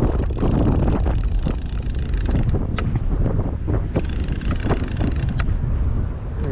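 Wind buffeting the microphone: a loud, steady low rumble, with a few short sharp clicks on top.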